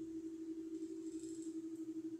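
Low background noise with a steady hum and no other sound: recording room tone.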